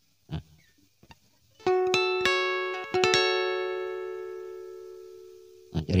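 Acoustic guitar notes plucked high on the neck: a quick cluster of about half a dozen plucks around two to three seconds in, then the last note left ringing and slowly dying away.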